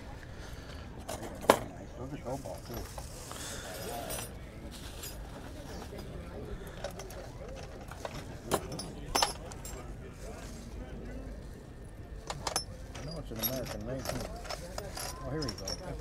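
Metal hand tools clinking as they are handled on a vendor's table: about four sharp clinks spread out, over faint background voices and a low outdoor rumble.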